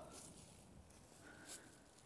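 Near silence: only faint outdoor background hiss between spoken remarks.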